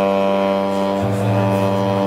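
ROLI Seaboard synthesizer keyboard holding one long, bright note with a lower note underneath that changes about a second in.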